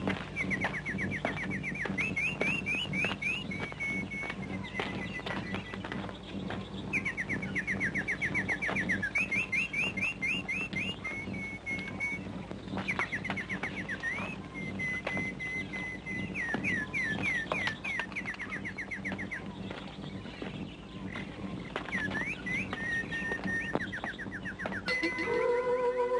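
A songbird singing in repeated trilled phrases of quick falling notes, with pauses between phrases, over a steady low hum and frequent faint clicks. Music with sustained tones comes in near the end.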